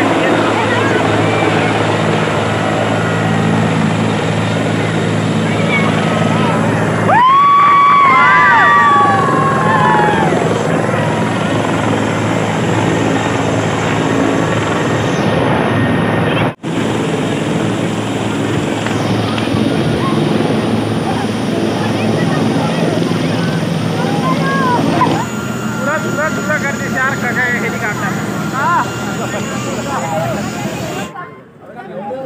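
Helicopter coming in to land, its rotor and engine noise loud and steady, with voices rising over it about seven seconds in. Near the end the rotor noise drops away and people's voices take over.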